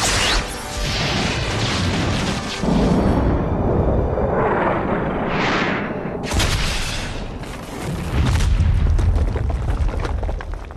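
Cartoon explosion sound effects over film score music: an energy blast and explosions with deep rumbling booms. A rising sweep about five seconds in is cut off, and a fresh blast breaks in just after six seconds, followed by heavy low rumbling.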